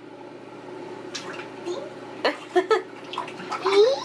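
Toddler in a bathtub, with a steady hiss like water and a few knocks of plastic bath toys against the tub. A short child's vocal sound comes near the end.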